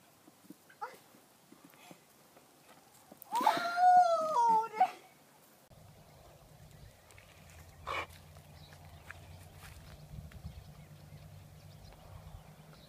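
A horse whinnying once, about a second and a half long, high and wavering, dropping in pitch at the end. Later a low steady hum runs under the audio.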